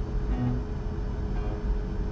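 Sampled grand piano (HALion 6 Warm Grand patch) sounding single notes from a drawn MIDI part, one low note about half a second in, ringing out and fading.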